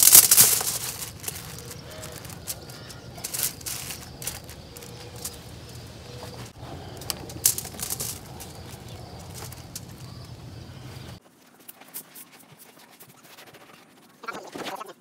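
Handfuls of damp, crumbly bentonite-based refractory mix dropped and pressed by hand into a wooden mold: irregular gritty crunches and pats, the loudest in the first second. A steady low hum underneath stops abruptly about eleven seconds in.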